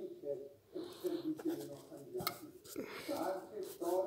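Quiet, low speech from a man, with a single sharp click a little past halfway.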